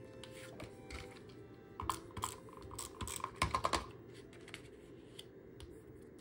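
Light clicks and taps of card being handled and pressed down onto a scrapbook page, with a quick flurry of clicks about three seconds in.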